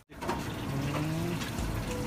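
Open-air market background noise: a steady hiss of surrounding activity with a brief low hum around the middle and a low rumble coming in near the end.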